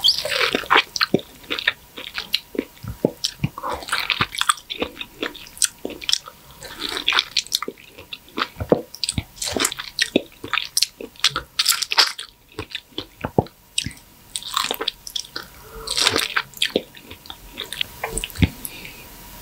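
Close-miked mouth sounds of biting and chewing soft, juicy mango pulp: a run of irregular wet clicks, smacks and squelches.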